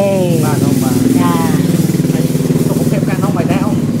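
A small engine running steadily under a woman's speech, loudest in the middle.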